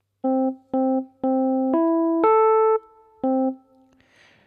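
A short six-note melody played on a piano-like keyboard. The same low note sounds three times (two short, one held), then two held notes step upward, the second of them the loudest. After a brief pause the first note returns once, short.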